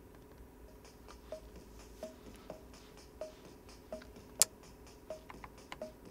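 Computer keyboard and mouse clicking in irregular, light taps while text is copied and pasted, with one much louder click about four and a half seconds in, over a faint steady hum.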